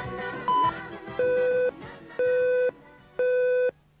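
Broadcast videotape countdown leader beeps: a short high beep about half a second in, then three half-second beeps at a lower pitch, one a second. The tail of music fades out under the first second.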